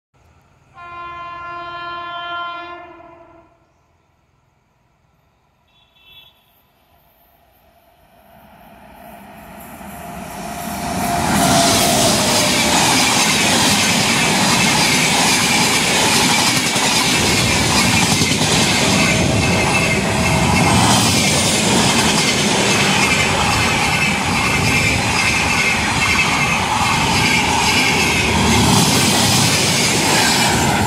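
An electric locomotive's horn sounds once for about three seconds. After a short quiet spell the train's rolling noise builds over a few seconds and then holds loud and steady as the passenger coaches roll past close by, the train slowing down.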